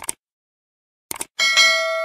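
Sound effects of a subscribe-button animation: short mouse clicks at the start and again about a second in, then a bell ringing and slowly fading.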